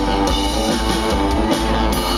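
Live band playing loud through a festival PA, picked up from the crowd: electric guitar and drum kit carrying an instrumental passage between sung lines.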